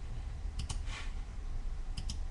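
A few light clicks from a computer's controls, over a low steady room hum.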